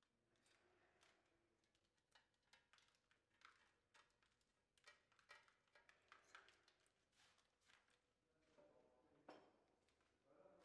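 Near silence, with faint scrapes and clicks of a plaster mother-mold piece being handled as it comes off a silicone mold.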